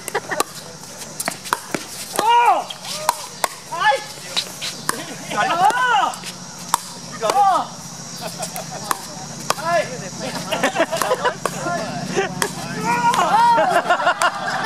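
Pickleball rally: paddles striking a hard plastic ball in a long string of sharp pops, sometimes two or three in quick succession. Voices call out in short rising-and-falling whoops between shots, loudest near the end.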